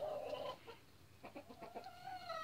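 A white broiler-type hen, which its owner takes for a Cornish cross, making soft, drawn-out calls. One call trails off about half a second in, and another begins near the end.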